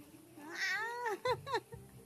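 A baby cooing: one longer rising-and-falling coo about half a second in, followed by two short coos.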